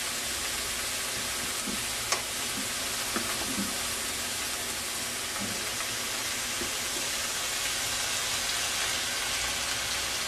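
Sliced onions and celery frying in freshly added olive oil in a skillet: a steady sizzle. A sharp click sounds about two seconds in, and a few soft knocks follow.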